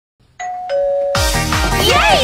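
Two-note doorbell chime, a higher note then a lower one. About a second in, music with a heavy beat and singing starts over it.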